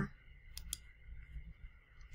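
Computer mouse button clicking: two sharp clicks about a fifth of a second apart, around half a second in, over a faint low hum.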